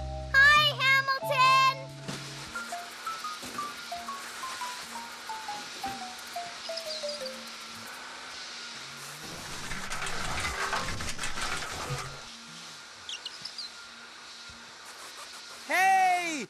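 Cartoon background music with a falling run of short notes over a steady low tone. About nine seconds in, a cartoon vacuum cleaner runs with a noisy whoosh for about three seconds.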